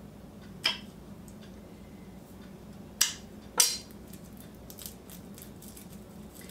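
Three sharp knocks of a kitchen knife on a wooden cutting board while small garlic cloves are cut and smashed, one soft knock early on and two louder ones close together past the middle.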